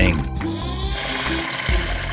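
Cartoon spray sound effect of a de-icing cannon starting to spray: a hiss over light background music.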